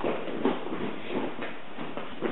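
Rustle of a heavy cloth cloak and soft steps as a person moves about and wraps it around himself, with a few faint knocks.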